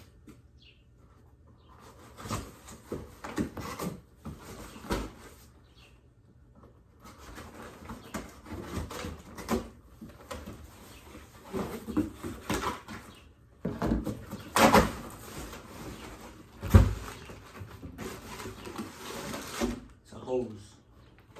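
A cardboard shipping box being cut open and handled: irregular scraping and ripping of the tape, cardboard flaps flexing and knocking, and the plastic-bagged contents rustling, with a couple of louder knocks in the second half.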